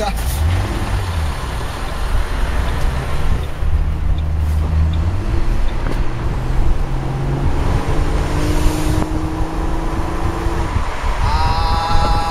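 Ford Mustang convertible's 4.0-litre V6 engine pulling the car along with the top down, wind rushing over the open cabin. The note is big and exaggerated for the car's modest pace, and it climbs steadily as the car accelerates from about eight seconds in.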